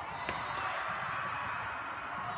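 A volleyball struck once, a single sharp smack about a third of a second in, over the steady chatter of many voices in a large hall.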